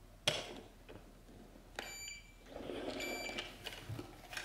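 BENTSAI HH6105B2 handheld inkjet printer being set on and rolled across a cardboard shipping box: a knock just after the start, then a rubbing scrape on the cardboard, with two short high steady tones from the printer about two and three seconds in.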